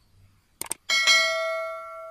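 Subscribe-button animation sound effect: two quick clicks, then a single bell ding that rings out and slowly fades.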